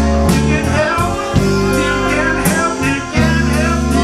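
Live band playing a slow blues-gospel song: electric guitar, bass and drums, with a trumpet and a male voice singing over them.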